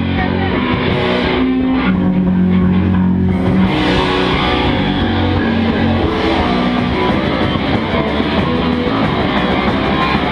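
Live rock band playing loud, continuous, distorted electric guitar over a drum kit.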